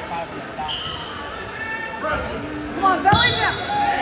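Scattered shouting voices echo in a gymnasium, with short high squeaks of wrestling shoes on the mat. One sharp thump comes about three seconds in.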